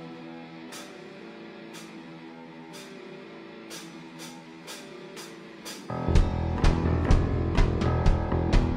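Live rock band of electric guitars, bass, keyboard and drums. It opens quietly with held notes and light ticks keeping time, then the full band comes in loudly about six seconds in.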